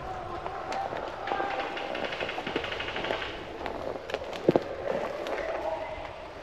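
Rapid ticking bursts of airsoft gunfire among scattered sharp clicks, with footsteps and voices in the wood. A single loud, sharp crack about four and a half seconds in is the loudest sound.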